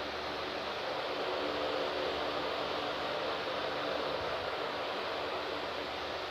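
Steady background hiss with a faint low hum running evenly throughout, with no speech.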